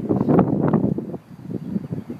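Rustling and handling noise on a phone's microphone as the handheld phone is moved into the car. It is loudest in the first second and then fades.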